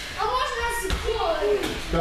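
Children's voices calling and shouting in a large hall, with one sharp thump a little under a second in.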